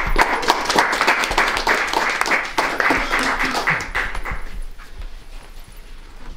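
A small group applauding with quick, irregular hand claps that die away over the last second or two.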